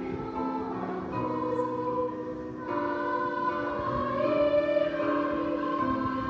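Children's school choir singing together, long held notes that change every second or so.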